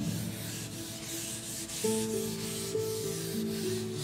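Board duster rubbing across a chalkboard in repeated wiping strokes, erasing chalk writing.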